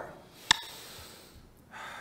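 Paced breathing exercise: a sharp click of a pacing beat about half a second in and another right at the end, a second and a half apart. Between the clicks come forceful, airy breaths in and out in time with the beat.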